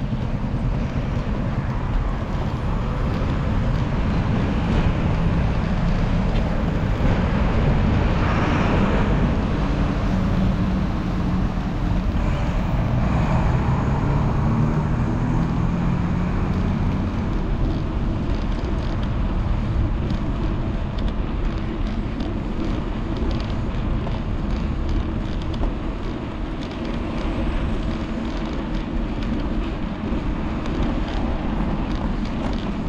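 Road traffic noise and wind rumble on a handlebar-mounted action camera's microphone while cycling: a steady low rumble, with motor vehicles passing. The traffic swells about eight seconds in, and a vehicle engine drone follows a few seconds later.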